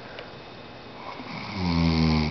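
A man snoring in his sleep: a quiet stretch, then a loud, low snore that swells in about one and a half seconds in.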